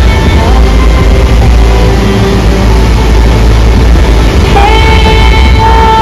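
Loud, steady roar of a big waterfall close by. About four and a half seconds in, a woman's voice singing long held notes comes in over it.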